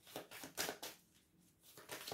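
A deck of oracle cards being shuffled by hand: several faint, short card-riffling sounds in the first second, a brief pause, then more near the end.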